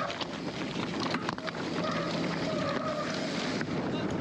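Wind rushing over the microphone and the rattle of a mountain bike descending a rocky trail at speed, with a few sharp knocks just over a second in. A steady whine comes and goes in short stretches.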